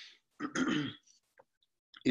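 A man clearing his throat once, about half a second in, during a pause in his talk.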